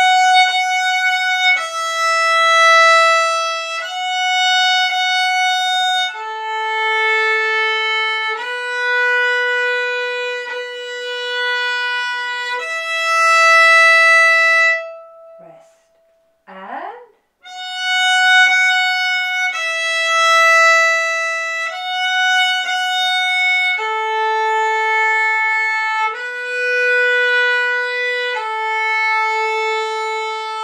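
Solo violin playing a simple, slow beginner tune in long bowed notes, moving to a new note about every two seconds. The playing breaks off briefly about halfway through, then carries on.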